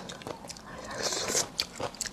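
Close-miked biting and chewing of crisp pickled bamboo shoot strips, soft and irregular, with a crunchier patch a little past the middle.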